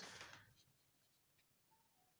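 Near silence: faint room tone, with a soft noise dying away in the first half-second and a couple of faint ticks later on.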